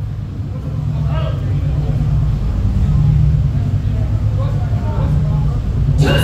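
A loud, steady low rumble that slowly swells, with crowd voices murmuring faintly over it.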